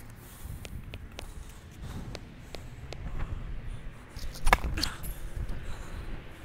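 Footsteps on a hard tennis court with a few light clicks, then a sharper knock about four and a half seconds in, over a low outdoor rumble.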